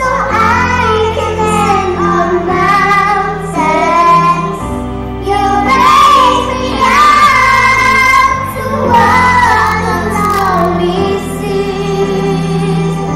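Young children singing into handheld microphones over a music backing track, in sustained phrases with short breaks between them.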